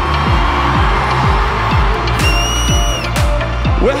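Live electronic dance music from a DJ set, with a steady four-on-the-floor kick drum at about two beats a second and a rising noise sweep in the first second. A high held tone sounds for about a second in the middle.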